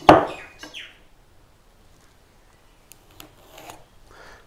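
A squared red gum block knocked once on a wooden workbench as it is turned over, followed by faint rubbing and scraping as a steel rule is slid into place across the wood, twice.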